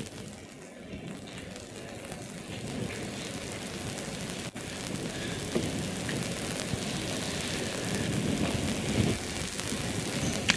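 Steady hiss of a lecture hall's room noise picked up through the PA and recording microphone, growing a little louder over the stretch, with no speech.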